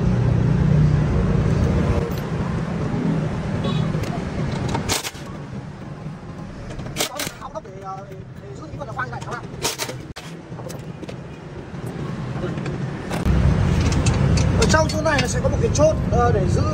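A handheld impact wrench on the bearing-housing bolts of a tiller's blade shaft, giving a few short sharp bursts, about five, seven and ten seconds in. A steady low rumble sits under it at the start and near the end.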